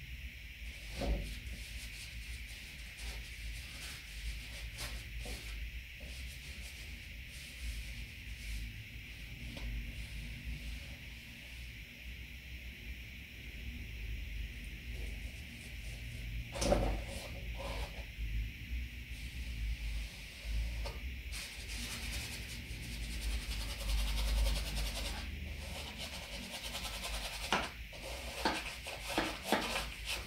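A paintbrush rubbing and scraping oil paint onto canvas in irregular strokes over a steady hiss, with a few louder knocks, one about halfway through and several near the end.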